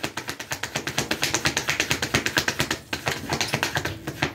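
A deck of tarot cards being shuffled by hand: a fast run of crisp clicks, about ten a second, with a brief break about three seconds in.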